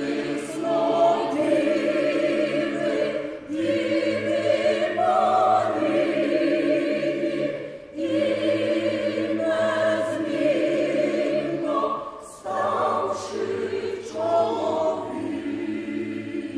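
Mixed choir of men's and women's voices singing a Ukrainian choral song. It sings in long held phrases, with short breaks for breath about every four seconds.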